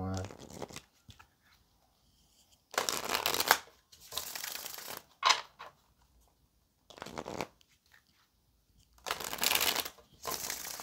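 A deck of tarot cards being shuffled by hand in several short bursts, each about a second long, with quiet pauses between them.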